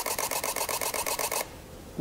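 Sony A77 II's shutter firing a continuous high-speed burst, a fast even run of clicks at about twelve frames per second that stops about a second and a half in.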